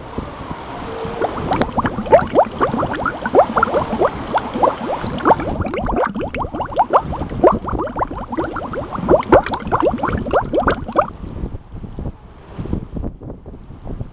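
Water gurgling and splashing in a rapid, irregular patter of small bubbling drops, from about a second and a half in until it fades about three seconds before the end.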